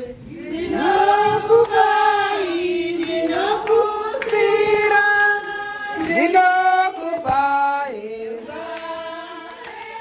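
A group of women singing a church hymn together, holding long notes.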